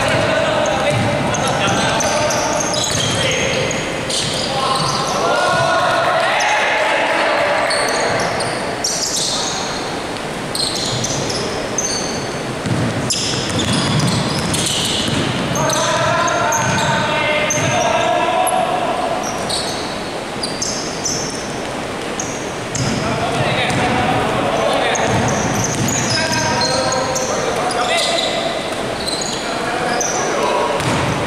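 A basketball being dribbled and bounced on an indoor court during a game, with players' voices calling out, all echoing in a large sports hall.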